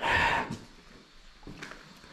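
A short, breathy exhale close to the microphone, then quiet room tone with a couple of faint clicks about a second and a half in.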